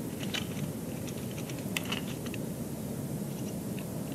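A few faint, scattered clicks and crackles from two common ravens on a stick nest, over a steady low background hiss.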